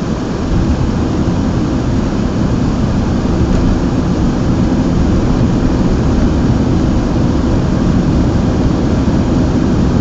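Road and engine noise inside a moving car's cabin: a steady low rumble that gets louder about half a second in and then holds.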